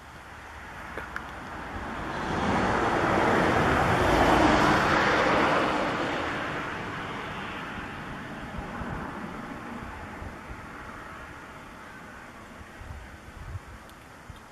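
A motor vehicle passing: a rush of noise that swells over a couple of seconds, is loudest about a third of the way in, then fades away slowly. Faint rustles and ticks follow near the end.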